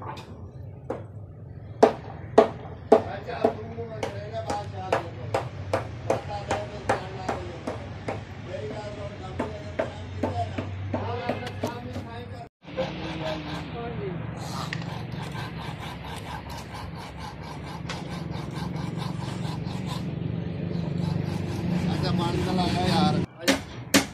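Hammer blows on a building site, repeated about two to three times a second through the first half and fainter afterwards, with people talking and a steady low hum underneath.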